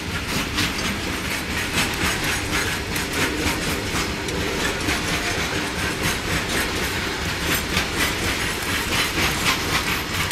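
Goods train of covered wagons rolling past, a steady rumble and rattle with the wheels clicking over rail joints a few times a second.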